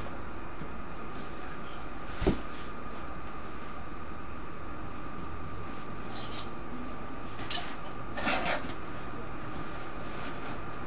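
A utility knife slitting the packing tape on a cardboard box: short scratchy slices, the longest near the end, over a steady background hum. A single sharp knock comes about two seconds in.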